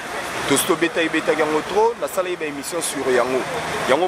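Continuous speech in conversation over a steady background noise.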